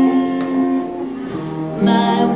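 Live acoustic guitar being strummed, with an electric guitar playing alongside it, in an instrumental gap with no singing.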